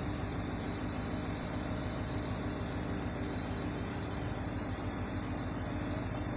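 Minuetto diesel multiple unit's engines running with a steady drone and a faint hum as the train departs.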